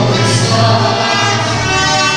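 Mariachi band playing and singing, with held notes over a strong low bass line.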